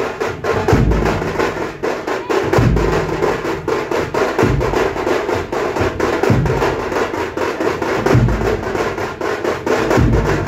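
Procession drums played in a fast, dense rhythm, with a deep bass-drum boom about every two seconds.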